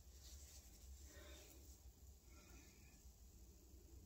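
Near silence: faint room tone with soft rustling of hair being handled.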